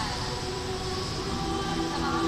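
Mixed SATB choir holding a sustained chord, moving to new notes about a second and a half in, with a low rumble underneath.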